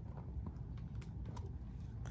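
Faint handling noises of stamping: a few soft taps and clicks as a clear acrylic stamp block is pressed onto a planner page and lifted off, over a steady low rumble.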